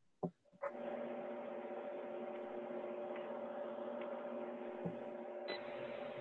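Low, steady hum with several fixed tones over a thin, muffled hiss, starting about half a second in: the background noise of a participant's open telephone line on a conference call.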